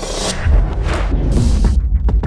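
Electronic music coming in: a short burst of noise, then a deep throbbing bass and a beat from about half a second in.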